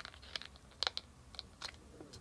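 Paper being pressed and smoothed down by hand onto a binder page: a handful of short, faint crinkles and taps, the sharpest about a second in.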